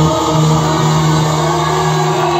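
Live band holding one steady sustained chord as a song closes.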